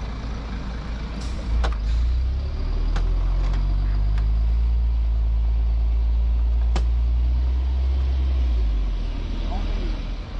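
Diesel city bus engine running alongside at close range: a low, steady drone that swells about a second and a half in, holds, and fades near the end. A few sharp clicks sound over it.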